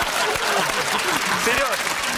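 Studio audience applauding, with the panel laughing and talking over it.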